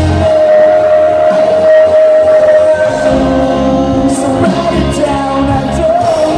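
Live rock band playing loudly: grand piano, electric guitar and drums with singing. A long note is held through the first half, then the full band fills in.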